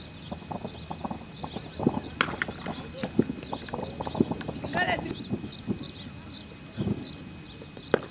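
Open-air cricket match sound as a ball is bowled: scattered light knocks and taps, with one sharp crack right at the end.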